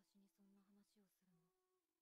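Near silence: a faint voice speaking a short line of dialogue at very low level, over a faint steady hum.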